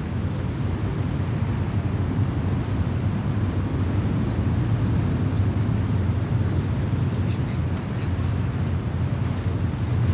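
Outdoor night ambience: a steady low rumble, with faint, regular double chirps of insects, such as crickets, high above it, about three a second.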